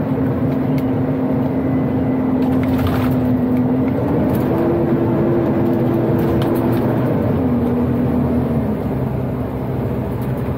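Acco garbage truck's diesel engine running as the truck drives along a road, heard from inside the cab. Its steady whine steps up in pitch about four seconds in, holds, then drops back about three seconds later.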